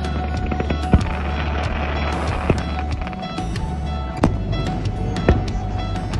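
A background music track with a steady bed of held tones, over which aerial firework shells burst as several sharp bangs at uneven gaps, the loudest about a second in.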